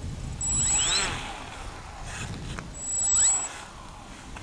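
The radio-controlled floatplane's motor and propeller revved up briefly twice, each time rising in pitch, with a high steady whine, then dropping back.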